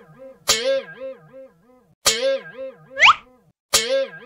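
Cartoon boing sound effect played three times, about every one and a half seconds, each a sudden twang whose pitch wobbles up and down as it fades. A short whistle sweeps quickly upward just before the last one.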